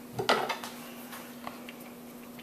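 Light metallic clatter of a compression tester's hose, fittings and gauge being handled on a flathead engine's cylinder head: one short, sharper clink about a quarter second in, then a few faint clicks. A steady low hum runs underneath.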